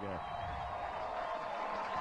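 Steady crowd cheering and ballpark noise celebrating a walk-off win, an even wash of voices with no single sound standing out.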